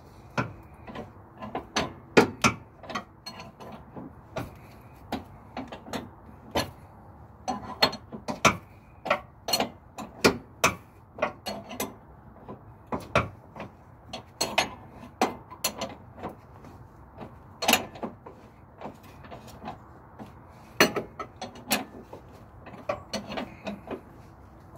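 Hand tools clicking and knocking against metal at an irregular pace, as bolts on a truck's suspension control arms are worked.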